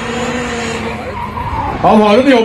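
Audi S2 quattro drift car heard from the stands, its engine held at a steady high pitch while the tyres skid and squeal through a smoky drift.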